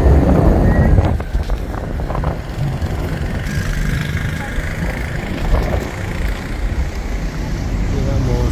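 Road vehicle travelling, heard as a low rumble with wind buffeting the microphone. The buffeting is loudest for about the first second, then settles to a steadier low rumble.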